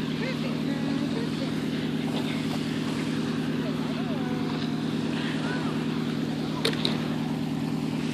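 A steady low drone, like an engine running at a constant speed, under a broad wash of outdoor noise, with a couple of faint clicks about two-thirds of the way through.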